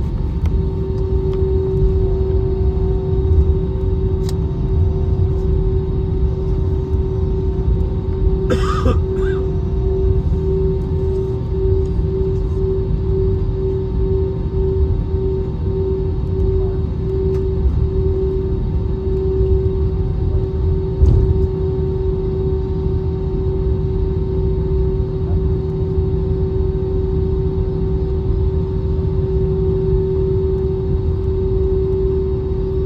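Jet airliner cabin noise while taxiing: a steady low rumble with a constant droning engine tone, which wavers in quick pulses for several seconds midway. A brief sharp click or rustle about eight and a half seconds in.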